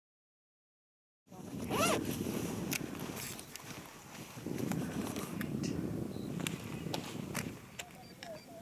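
Sound cuts in abruptly after silence a little over a second in: an uneven low rumble of wind on the microphone with scattered clicks of camera handling. A short rising call sounds just after it begins.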